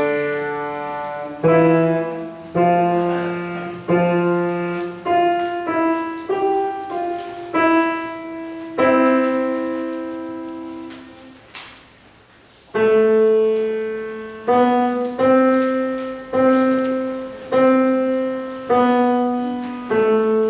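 Grand piano played solo: a slow piece of struck chords, each left to ring and fade. A brief pause a little past halfway, then the chords resume.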